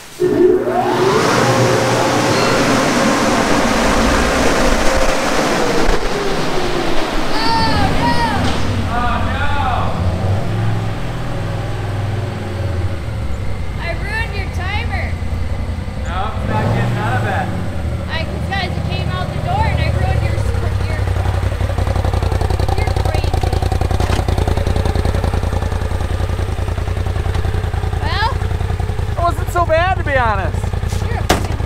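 Polaris RZR XP Turbo side-by-side's twin-cylinder turbo engine running as the machine pulls out of a car wash bay, then running steadily at a low rumble. Early on, with a hiss, a high whine holds and then falls away in pitch over several seconds.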